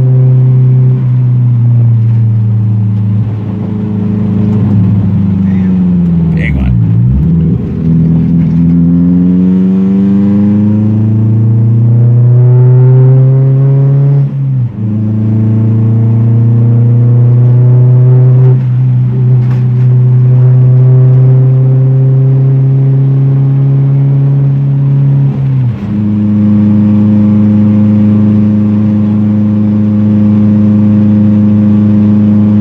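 Honda Civic Type R's 1.6-litre VTEC four-cylinder engine heard loud from inside the cabin while driving. Its note sinks to low revs about seven seconds in, climbs steadily for several seconds, and dips sharply twice, at gear changes, before settling to a steady cruise.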